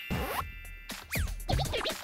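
Record-scratch sound effects over background music: several quick back-and-forth pitch sweeps, a comedic editing effect.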